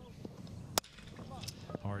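A metal baseball bat striking the ball once, a single sharp crack about three-quarters of a second in, as the ball is hit hard on the ground toward second base.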